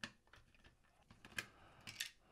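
Faint, scattered clicks and light taps of a hand tool removing small hex screws from a circuit board in a plastic module case. A sharper click comes about one and a half seconds in.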